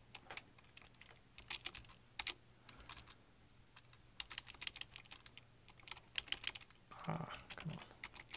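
Typing on a computer keyboard: quiet, irregular runs of key clicks, over a faint steady low hum.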